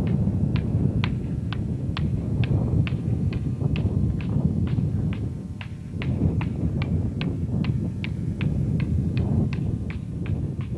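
Two hand-held rocks clacked together in a steady rhythm, about two or three sharp clacks a second, over a steady low rumble.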